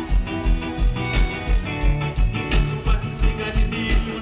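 Live band music: electric guitar and bass over a steady kick-drum beat, about three beats a second, in an instrumental passage without vocals.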